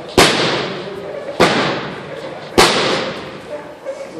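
Three loud, sharp slaps a little over a second apart, each followed by a long echo through the large gym hall.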